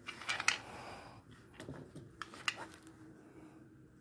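Light handling noise of small parts being moved about on a steel bicycle-trailer frame: a few scattered clicks and rustles, the sharpest near the first half second.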